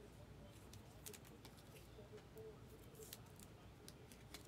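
Near silence, with a few faint light clicks of trading cards being handled and set down.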